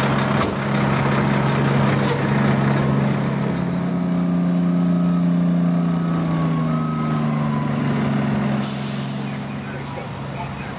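Heavy diesel fire trucks idling steadily, the engine note shifting in pitch midway through. Near the end there is a short burst of air hiss.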